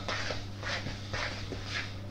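A spoon stirring mashed potato and flour in a mixing bowl: soft, scraping, squelching strokes about twice a second.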